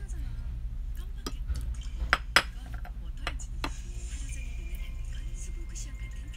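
A small plate set down and handled on a table: a few sharp clinks and taps, the loudest two close together about two seconds in, over a low steady hum.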